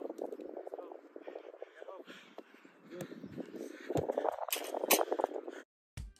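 Indistinct players' voices on a training field, with a few sharp strikes of a soccer ball being kicked on turf, the two loudest close together near the end. The sound cuts off abruptly just before the end.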